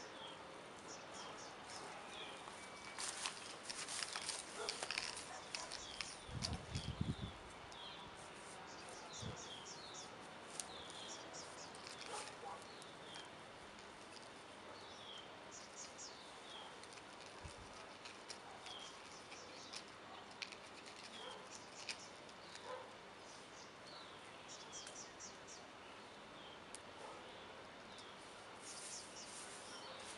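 Birds chirping, short high notes that slide downward, repeated every second or so. A few seconds in there is a spell of rustling and clicks, then a dull thump.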